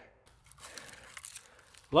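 Faint, irregular crunching and rustling in dry pine needles, cones and twigs on the forest floor.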